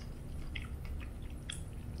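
A person chewing food quietly, with a few faint wet mouth clicks.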